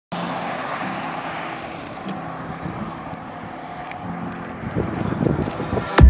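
Steady road and wind noise from a moving car, growing louder and rougher near the end.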